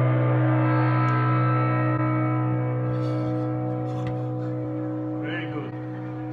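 A hand-held Chinese bronze gong, struck with a padded mallet just before, rings on with a deep hum and many steady overtones that waver slowly and fade gradually.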